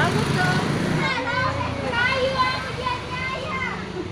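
Several children's high voices chattering and calling over one another, with a low hum of passing motorbike traffic underneath.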